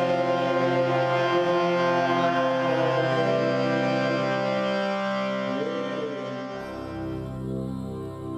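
Kirtan music: sustained harmonium chords under a voice singing a chant. About a second before the end it changes to a softer section with a pulsing rhythm.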